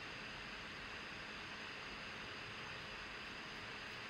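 Faint steady hiss of background noise from a video-call audio feed, with no other sound.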